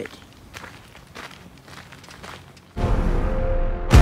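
Faint footsteps on a dirt trail, a few soft scuffs, then background music cuts in suddenly near the end and is the loudest sound.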